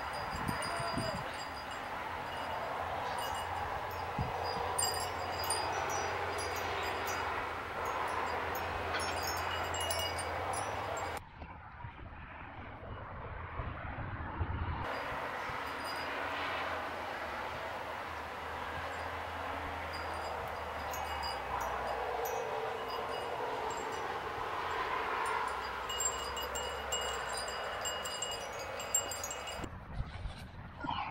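Light chimes ringing irregularly over steady background noise; the high ringing drops out for a few seconds about eleven seconds in.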